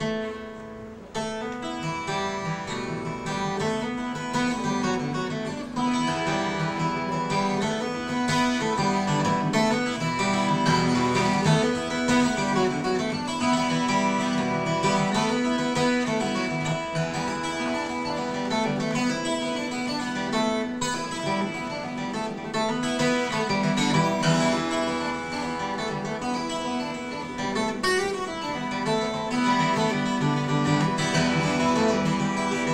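Solo twelve-string acoustic guitar flatpicked with a pick, a continuous run of picked notes with no singing.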